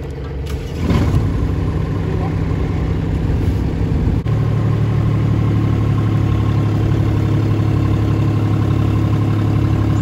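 Small diesel engine of a JCB mini digger running, with a knock about a second in. About four seconds in the engine note steps up and holds, heavier, as the arm strains to lift a strapped bulk bag of sand that it cannot raise.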